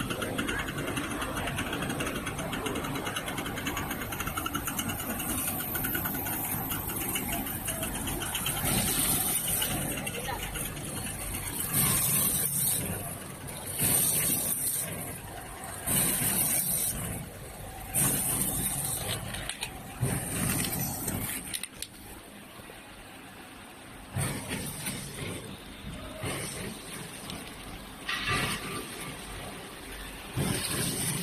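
Horizontal flow-wrap packing machine running, with a burst of hiss repeating about every two seconds as it cycles, over the general noise and voices of a busy exhibition hall.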